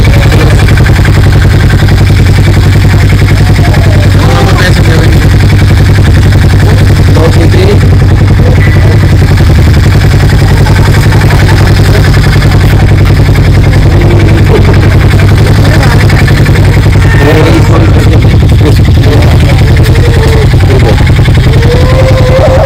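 Harley-Davidson X440's single-cylinder engine idling steadily close by, a loud, even low pulsing that does not change.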